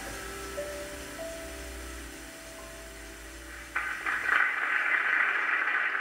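The last held notes of the song's instrumental accompaniment die away softly. About two-thirds of the way in, audience applause breaks out suddenly and becomes the loudest sound.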